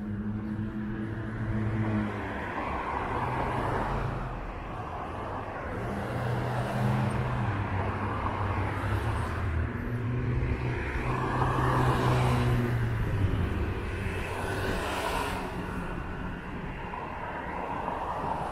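City street traffic: several cars pass one after another, each a swell of tyre and engine noise that rises and fades. A low engine hum carries on underneath, loudest around the middle.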